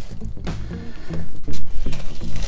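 Background music: a quick run of short notes.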